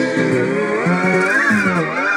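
Music playing from a vinyl record on a turntable, with a pitched sound that slides up and back down, twice.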